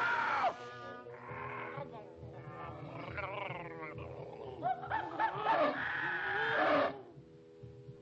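Animated cartoon monsters roaring and growling in a run of separate snarls over sustained background music. The roars stop about seven seconds in and the music carries on more quietly.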